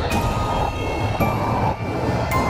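Loud horror-film sound design as a man smashes through a wall: a dense, steady rumble with thin high tones held above it and debris crashing.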